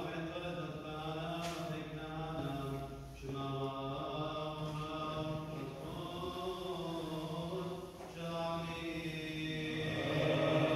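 Assyrian Church of the East liturgical chanting: voices sing melodic phrases, broken by short breaks about three and eight seconds in.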